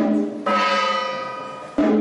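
Struck metal percussion of a temple ceremony, each stroke ringing on and slowly dying away. There are three strokes: one at the start, one about half a second in, and one near the end. The second stroke rings higher and brighter than the others.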